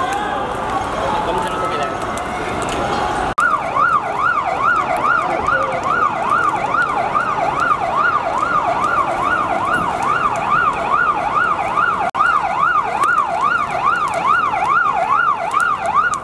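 Fire engine siren in a fast yelp, its pitch sweeping up and down about two and a half times a second. It cuts in abruptly a few seconds in over street noise and voices, with one brief break late on.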